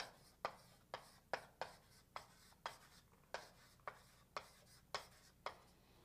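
Chalk on a blackboard as words are written out by hand: a string of faint, short, irregular taps and strokes, about two a second.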